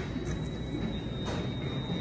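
Steady indoor room noise: a low, even background hum with a thin, steady high-pitched tone running through it.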